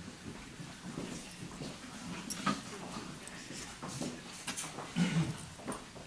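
Footsteps and shuffling of several people moving about a hall, with scattered light clicks and a couple of dull thumps about five seconds in.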